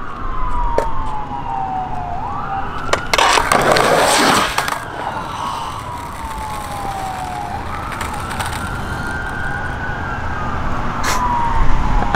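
An emergency-vehicle siren wailing in slow cycles, each a long fall in pitch followed by a quick rise and a held high note. About three seconds in, a loud noisy clatter lasting over a second comes from a skateboard and a skater falling on concrete.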